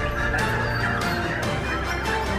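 Several white-rumped shamas (Bornean murai batu) singing at once: a dense, steady chorus of warbling song with sharp clicking notes cutting through.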